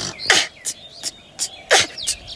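A boy beatboxing: a quick run of sharp percussive mouth sounds imitating drum hits, about five in two seconds, with deeper kick-like thumps about a third of a second in and again near the end.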